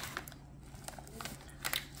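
Snack bag crinkling faintly as a hand rummages in it and pulls out a cheese curl: a few soft rustles and clicks, with a short cluster near the end.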